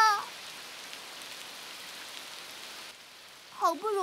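Steady rain falling, an even hiss that drops away about three seconds in.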